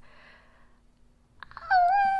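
Mostly quiet, then near the end a high-pitched voice holds one short, steady note, like a squeal or a sung 'ooh'.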